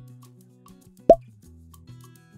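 A single short 'plop' sound effect about a second in, sweeping up in pitch, over quiet background music with a light regular tick.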